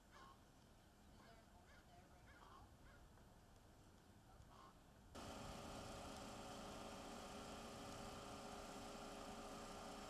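Faint bird calls repeating every half second or so over a quiet street. About halfway through they are cut off by a sudden, louder steady hum, the idling engine of a parked police SUV.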